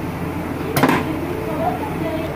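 Hot oil with spices sizzling steadily in a frying pan for a tempering (baghar). A little under a second in there is one sharp clink of a utensil against the pan.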